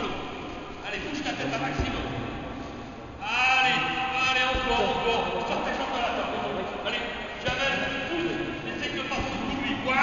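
Men's voices shouting in a large hall, with a loud, drawn-out shout starting about three seconds in and more shouting near the end.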